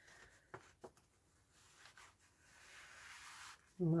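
A card tag sliding into a paper bag pocket: a couple of light taps, then a faint paper rubbing sound about two and a half seconds in that lasts about a second.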